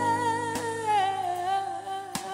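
A female gospel singer holding one long sung note with vibrato, slowly falling in pitch, over soft sustained keyboard chords.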